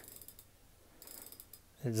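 Faint rapid ratchet clicking from the Tacx Neo 2 SE smart trainer's freehub as the cassette is turned by hand, a run of quick ticks about a second in.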